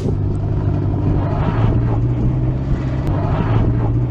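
Performance SUV engines idling at a drag-race start line, a steady low drone that holds one pitch without revving up.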